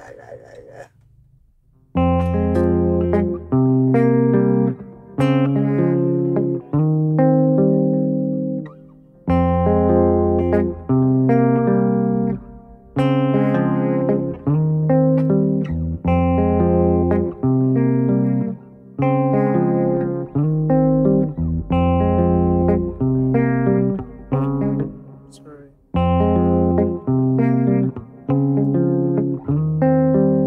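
Clean electric guitar on a black single-cutaway body, playing a slow picked chord pattern that starts about two seconds in. The phrases repeat with short breaks and run through a minor-mood progression in A-flat major: F minor, C minor, D-flat major 7, then a partial E-flat 13.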